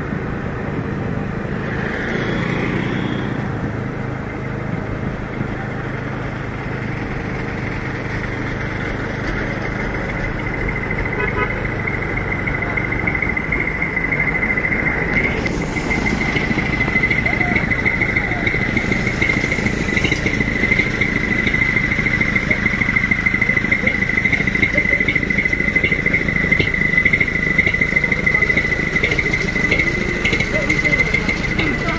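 Motor vehicle engine running steadily, its low hum fading after about thirteen seconds; from about eleven seconds in, a steady high-pitched tone continues to the end.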